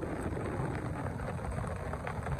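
Steady rain falling: an even, unbroken patter with a low rumble underneath.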